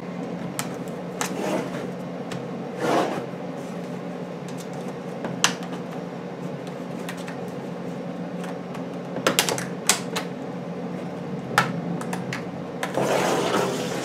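Plastic laptop palm-rest clips clicking and snapping as a small flat metal pry tool is worked along the case seam: scattered sharp clicks, with a quick cluster a little after nine seconds in. The clips are held tight and the case is slow to release. A couple of brief scraping rustles and a steady low hum sit underneath.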